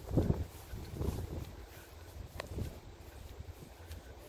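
Footsteps through mown grass and dry fallen leaves, a soft step about once a second, over a steady low rumble of wind on the microphone.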